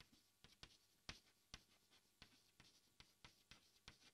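Very faint chalk writing on a chalkboard: a string of soft, irregular taps and short scratches, about three a second, as words are written.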